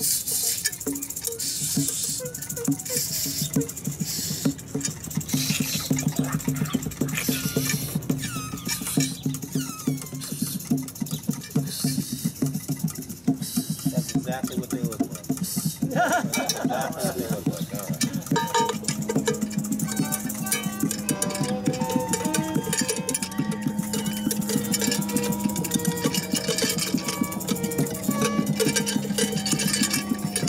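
Free-improvised ensemble music of percussion, small instruments, violin and electronics: busy clattering percussion throughout, with wavering sliding pitches about halfway through. From about two-thirds of the way in, held tones join the clatter and step between a few pitches.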